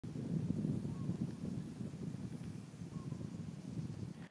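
Low, gusty rumble of wind buffeting the microphone.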